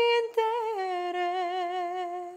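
A teenage girl singing a cappella. She holds a high note, breaks off briefly about a third of a second in, then steps down to a lower note that she holds with a slight vibrato.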